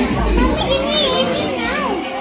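Young children's excited high-pitched voices, calling out with no clear words, over background music with a low beat in the first part.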